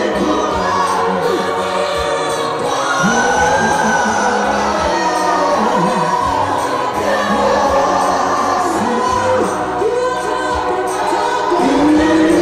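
A congregation singing a gospel song together, many voices joined in continuous, steady song.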